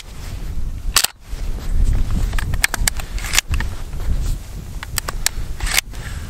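A dozen or so sharp metallic clicks at irregular spacing, the loudest about a second in: shotgun shells being pushed into the loading port and magazine of a Benelli semi-automatic shotgun. A low wind rumble on the microphone runs underneath.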